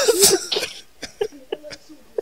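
A person's voice in a loud, breathy burst right at the start, a laugh or cough, fading within about half a second into quieter brief voice sounds and small clicks.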